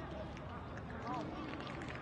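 Players' shouts carrying across a near-empty football stadium: several short calls from different voices over a low steady background, with no commentary.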